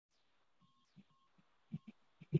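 Near silence: faint room tone with a few soft, low thumps, the clearest two just before the end.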